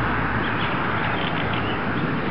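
Steady outdoor background noise: a constant, even hiss with no distinct events.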